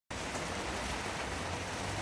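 Heavy rain falling steadily, an even hiss of drops with no let-up.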